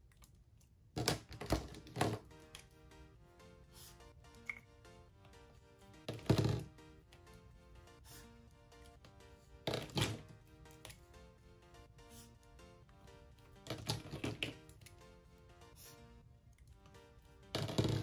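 Plastic Sharpie S-Note chisel-tip highlighter markers being handled: short sharp clicks and knocks in small clusters a few seconds apart as caps come off and snap back on and markers are set down. Soft background music plays throughout.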